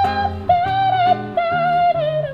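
Female jazz vocalist scat-singing a phrase of sustained wordless notes, each held about half a second, over acoustic guitar accompaniment with low bass notes.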